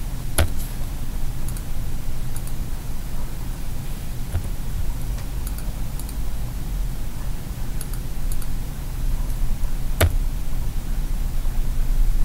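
Computer mouse clicks and a few keyboard keystrokes over a steady low hum. Two sharp clicks stand out, one just after the start and one about ten seconds in, with fainter clicks between.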